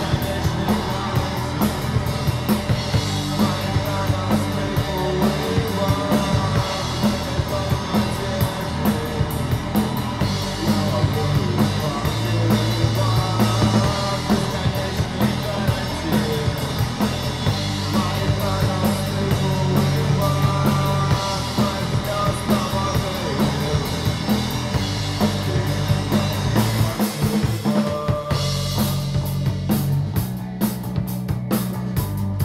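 Live rock trio playing an instrumental passage on electric bass, electric guitar and drum kit, with a steady driving beat. The bass drops out briefly near the end, then comes back in.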